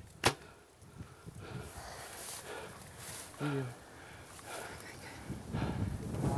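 Compound bow shot: one sharp snap of the released string about a quarter second in, loud against an otherwise quiet field. Faint rustling and a brief low voice sound follow.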